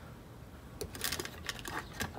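A few light clicks and taps of a small circuit board being handled, as a PCI POST diagnostic test card is pulled out and moved about over the workbench, over a faint low hum.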